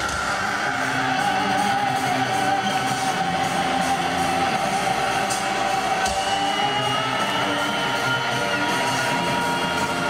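Heavy metal band playing live, with electric guitars and drums, heard from the audience in an arena. A long high note holds steady over the band, and further held tones join about six seconds in.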